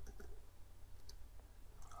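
A few faint, scattered clicks from a computer mouse and keyboard being worked, over a low steady hum.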